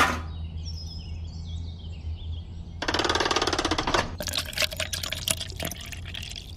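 Wet concrete slurry pouring from a tipped miniature concrete mixer drum into a small metal bucket, with irregular wet splats and drips in the second half. A sharp knock at the very start and a short, fast buzzing rattle about three seconds in.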